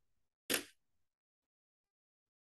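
A single short click-like noise about half a second in, otherwise near silence.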